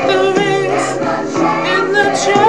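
Gospel-style choral singing over a backing track, voices held with vibrato.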